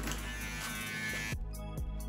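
Electric shaver buzzing as it shaves the fine hairs behind the ear, cutting off about one and a half seconds in. Background music plays underneath.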